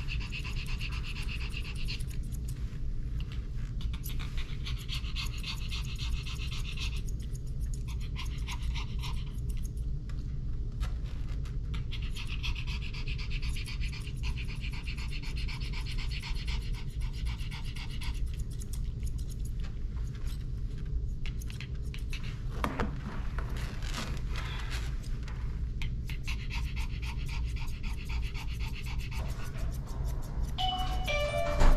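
Pomeranian panting rapidly and steadily over a steady low hum.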